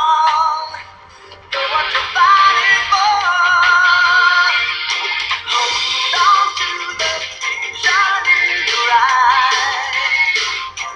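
A pop song with a high, processed-sounding sung vocal over backing music. It drops away briefly about a second in, then carries on.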